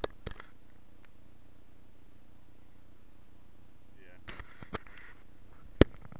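A few sharp knocks and clicks from handling a kayak-mounted camera, with a brief swishing stretch between them; the loudest knock comes just before the end, as a hand reaches to the camera.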